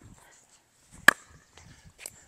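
A single sharp pop of a composite pickleball paddle striking a plastic pickleball about a second in, with faint shuffling around it.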